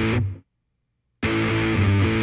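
Guitar sample played through SoundTrap's Classic Dist distortion effect, demonstrating its distorted, broken-up tone. It cuts off about half a second in, then plays again after a short silence.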